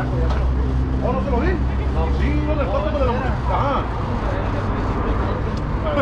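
A steady low motor hum with indistinct voices talking over it.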